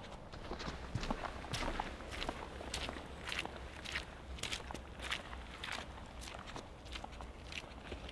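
Footsteps of a person walking on a muddy dirt forest path, about two steps a second, growing fainter near the end as the walker moves away.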